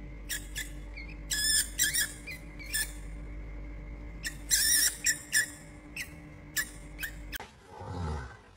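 A mouse squeaking: many short, high-pitched squeaks in irregular clusters over a steady low hum.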